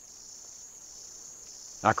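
Steady high-pitched insect chirring, like crickets, in the background; a man starts speaking near the end.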